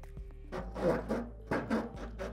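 Quiet background music, with a light knock or two as the laptop stand's stem is fitted into the booth's opening.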